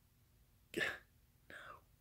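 A man's breathy, whispered vocal sounds: a short one a little under a second in, and a fainter one about half a second later.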